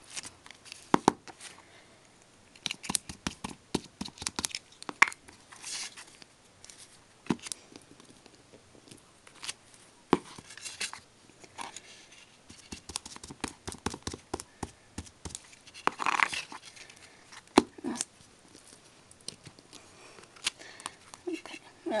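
Wood-mounted rubber stamp being pressed and tapped repeatedly onto card on a table, giving clusters of sharp knocks, with paper rustling as the card is handled.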